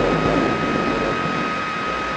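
Steady rushing noise with a thin high tone held through it: a noise drone in an experimental ambient track.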